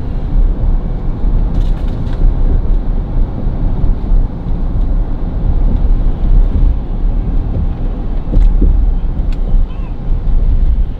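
Steady low rumble of road and engine noise heard from inside a moving car's cabin, with a few faint clicks.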